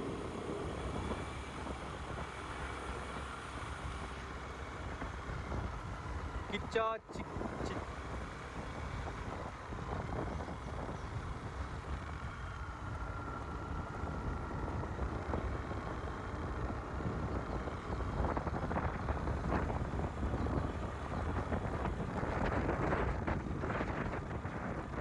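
Steady wind and road noise from a moving vehicle, buffeting on the microphone, growing rougher in the second half. A short pitched chirp sounds about seven seconds in, followed by a momentary dropout.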